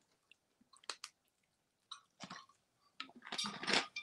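Faint, sparse crunching of hard, deep-fried corn snacks being chewed, the crackles thickening near the end. A plastic water bottle being twisted open adds to the clicks.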